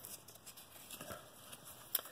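Faint rustle and slide of baseball trading cards being handled and flipped by hand, with a short sharp tick near the end.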